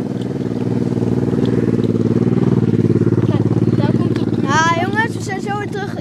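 A motorcycle passing close by. Its engine note builds to its loudest about halfway through, then fades away.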